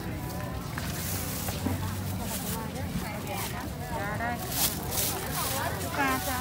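People talking at a busy market stall, with short bursts of plastic bags rustling.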